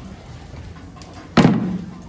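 A single sharp bang about one and a half seconds in, ringing briefly as it dies away, over a quiet background.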